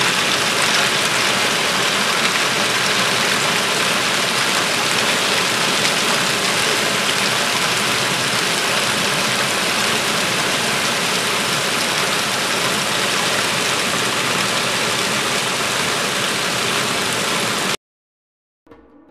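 Heavy rain mixed with pea-sized hail pouring down in a steady, dense hiss. It cuts off abruptly near the end.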